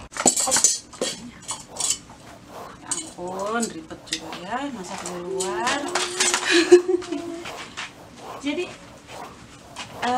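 Sharp clinks and knocks of kitchen utensils and dishware being handled, scattered through the clip with a loud clink a little past the middle. A wavering pitched tone, like humming, rises and falls in the middle.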